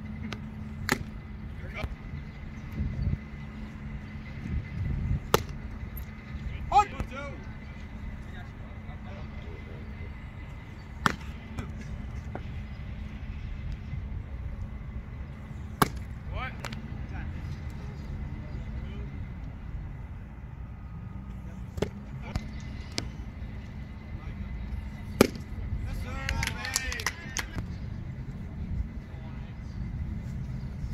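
Baseballs popping into a catcher's mitt: sharp single pops every several seconds as pitches are thrown, over open ballfield ambience with a steady low hum.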